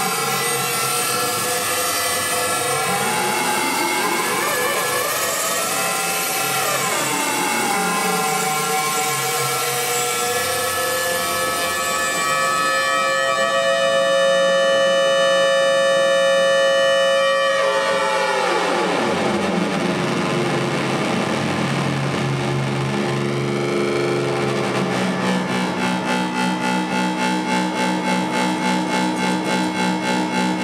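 Electronic improvisation on modular synthesizers: pitches slide up and down over one another, then settle into held, layered tones that cut off abruptly into a falling glide. Near the end a low tone pulses about three times a second.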